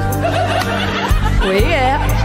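A woman chuckling and laughing into a microphone over slow ballad backing music.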